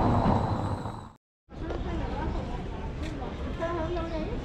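City street ambience: traffic noise, cut off abruptly by a brief silence about a second in, then street noise with faint voices of passers-by near the end.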